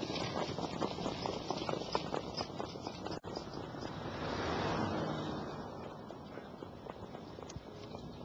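Hoofbeats of harness racehorses slowing on the dirt track after the finish: a dense, irregular patter of strikes, with a broad swell of noise about four to five seconds in.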